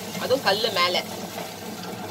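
Electric wet grinder running with a steady low hum as its stone roller turns in the drum, grinding soaked urad dal into idli batter. A woman's voice speaks briefly over it about half a second in.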